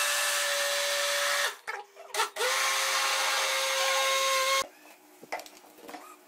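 Electric blender motor running steadily under the load of ghee and powdered sugar being creamed. It stops about a second and a half in, gives a couple of brief pulses, runs again for about two seconds, then cuts off, followed by a few light clicks.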